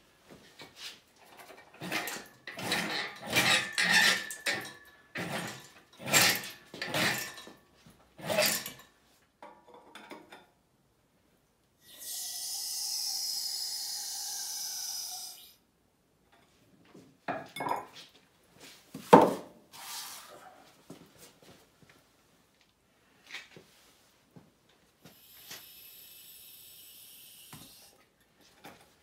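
Irregular metallic clanks and rattles, loudest in the first nine seconds, as a Land Rover 2.25-litre diesel engine hanging from a chain hoist is worked out of the chassis. A steady high hiss runs for about three seconds midway, then come a few sharp knocks and a fainter high hiss near the end.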